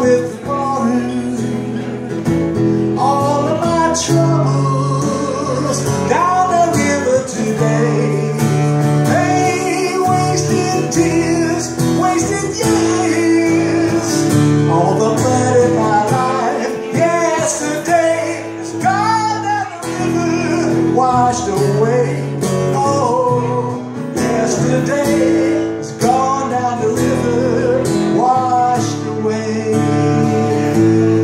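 Acoustic guitar strummed steadily in a live solo performance, with a man's voice singing over it.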